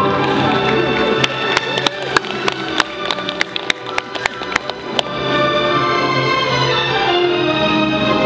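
Recorded orchestral music with strings. From about one second in, a quick run of sharp, bright percussive strikes plays over it for about four seconds, then the full orchestra swells back in.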